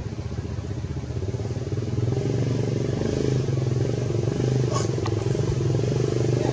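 An engine running steadily with a low hum, growing louder about two seconds in, and a brief click near the end.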